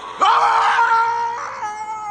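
A man yelling in celebration as a penalty goal goes in: a loud, long held shout starting about a quarter second in, then a second shout that falls away near the end.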